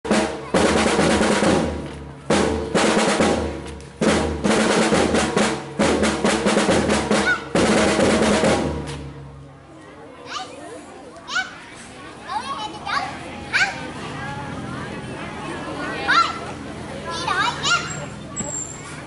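Marching drums, snares with a bass drum, playing a loud march beat in phrases with short breaks, stopping about nine seconds in. After that come scattered children's voices and short calls.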